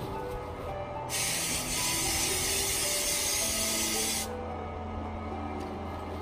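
An aerosol can of insecticide spraying in one continuous hiss of about three seconds, starting about a second in and cutting off sharply.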